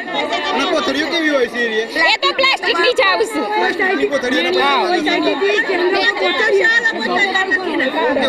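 Women talking, several voices overlapping at once.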